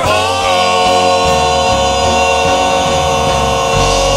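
Four-man gospel quartet singing through microphones, holding one long chord.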